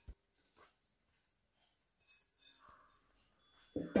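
Near silence: room tone, with a short click just at the start and a few faint soft noises; a woman's voice begins right at the end.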